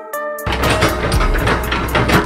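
Background music of plucked guitar notes with a regular high tick. About half a second in, the loud running of heavy diesel machinery cuts in beneath it, deep and noisy.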